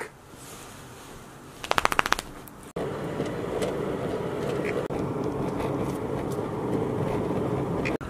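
A short burst of rapid rattling clicks, about a dozen a second for under a second, then a steady low rumble of a car driving.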